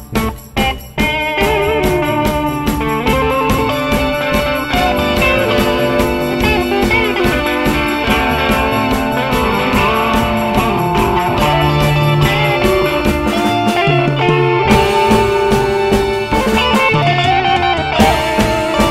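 Indie rock band recording led by guitar over drums. A few stop-start hits come first, then the full band plays continuously from about a second in.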